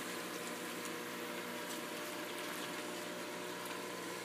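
Reef aquarium sump running: drain water pouring into the refugium and bubbling steadily, over a steady low pump hum.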